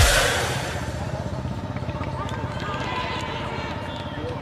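Background music fading out over the first half-second. It gives way to quieter outdoor ambience with distant voices and short shouts across the pitch.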